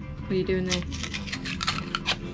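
A run of light clicks and knocks from hard parts being handled and fitted together at a workbench, with a brief human voice sound about half a second in.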